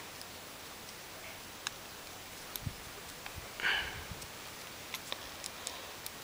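Faint clicks and handling noise of multimeter test leads and probes being plugged into a battery charging circuit, with a short sniff a little past the middle.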